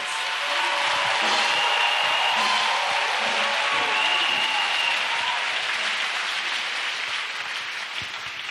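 Congregation applauding in response to the preaching, with a few high held calls above the clapping; the applause dies down over the last few seconds.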